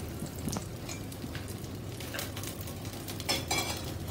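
Rava cheela batter frying in oil on a nonstick pan with a low steady sizzle, and a few light clicks of a metal utensil against the pan, the busiest cluster near the end.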